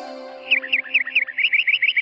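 Cartoon bird twittering: quick, short falling chirps, several a second, starting again about half a second in over held synthesizer notes of the background music.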